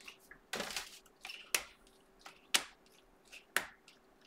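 Glossy Panini Prizm trading cards being flicked off a hand-held stack one at a time. Sharp card snaps come about once a second, with a short rustle of card stock about half a second in.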